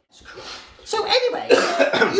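A cough with a short rasping start, followed about a second in by a voice making non-word sounds.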